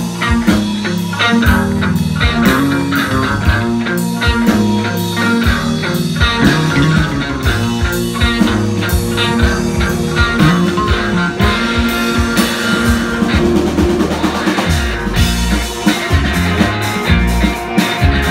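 Live psychedelic rock band playing: two electric guitars through amplifiers over a drum kit, with a steady run of drum hits throughout.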